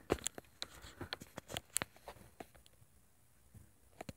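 Faint handling noise: a string of irregular small clicks and taps, fading to near quiet about three seconds in.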